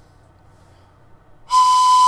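A 3D-printed plastic two-tone train whistle blown on its higher-pitched tone: a single steady blast that starts about one and a half seconds in, after a short hush.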